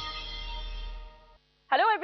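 The closing chord of a TV programme's title music: held tones fade for about a second and a half and then stop. After a brief silence, a woman starts speaking.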